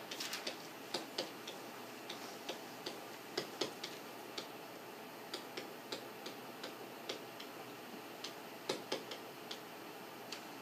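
Light, irregular tapping and clicking of a stylus on a tablet screen during handwriting, a few taps a second, with a quick cluster at the start and a louder pair near the end.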